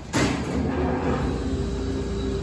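Elevator motor starting up with a sudden onset, then running with a steady, loud hum.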